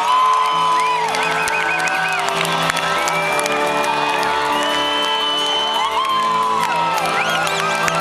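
Live band holding sustained chords, heard from within the audience, with the crowd cheering, whooping and whistling over the music.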